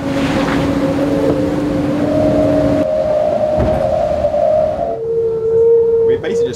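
Racing yacht driving fast through waves: rushing, splashing water with a steady humming whine from the boat that steps up in pitch about halfway through and drops again near the end.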